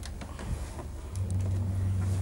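An electric pottery wheel's motor is switched on about a second in and runs with a steady low hum. Before that there are a few light handling clicks.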